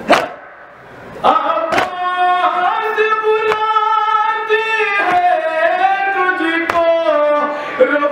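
A man chanting a nauha, a Shia lament, in long held notes, his voice coming in about a second in. Sharp chest-beating slaps of matam strike in an even beat about every one and a half seconds.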